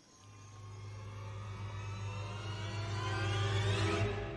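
A low steady hum with a swelling tone over it that rises in pitch and grows steadily louder.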